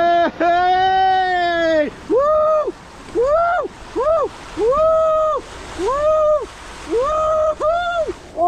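A rider sliding down a water slide lets out one long cry, then a string of short, high yelps about once a second, over the rush of water along the slide.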